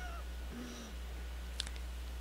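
A faint, brief animal cry that bends up and down in pitch, followed by a soft click, over a low steady hum.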